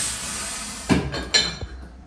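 A sharp hiss of compressed air from a shoemaker's pneumatic sole press, fading over about a second, followed by two knocks as the press and shoe are handled.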